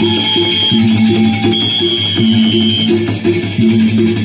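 Traditional Sasak gamelan music: a quick repeating pattern of short pitched metallic notes, a lower note about every second and a half, and a high held reed-like tone twice.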